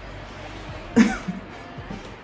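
Quiet background music with a single short cough about a second in.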